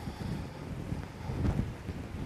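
Low, uneven rumbling with soft knocks: movement and handling noise at the altar as the server shifts the missal and steps about, picked up close by the microphone.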